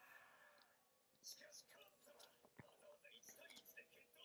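Near silence with faint, whispered-sounding speech and a single light click about two and a half seconds in.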